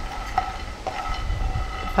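Peanuts roasting in a non-stick frying pan, stirred with a spatula: light scraping and a few small clicks over a low rumble.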